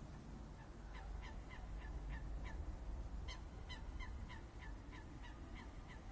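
Faint calls of a bird: a rapid series of short calls, about three a second, each dropping slightly in pitch, starting about a second in with a brief break in the middle.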